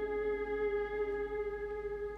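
Slow live band music, with one note held steady and no singing over it.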